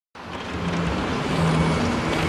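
Road traffic noise with car engines, fading in from silence over the first half second to a steady rush.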